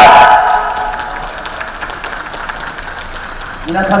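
Applause and crowd noise from a street audience, an even clatter of clapping after an amplified voice breaks off about half a second in. A man's voice starts again over the loudspeaker right at the end.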